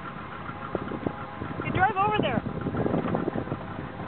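A boat's motor idling steadily, with a short exclamation from a person's voice about two seconds in.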